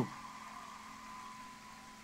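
Faint steady background hiss with a low hum and a thin steady high tone, fading slightly; no speech or crowd sound stands out.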